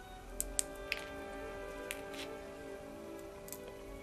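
Soft background music with a few small sharp clicks from handling the beaded wire petals, the two loudest about half a second and a second in.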